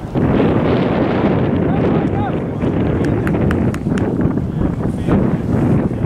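Wind buffeting an outdoor microphone: a loud, steady rush, heaviest in the low range, with a few faint clicks and a faint distant voice about two seconds in.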